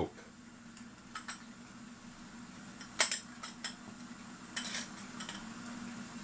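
Light clicks and clinks of small metal clock parts being handled: the dial plate and the brass glass bezel ring. There is one sharp click about halfway through and a few softer ones before and after it.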